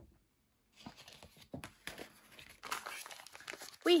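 Frosted plastic pouch crinkling as it is picked up and handled, in a string of irregular crackles that starts about a second in and grows busier near the end.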